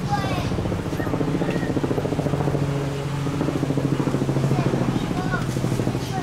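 A motor running steadily with a fast pulsing beat, its pitch sagging a little after the middle, with short high chirps breaking in now and then.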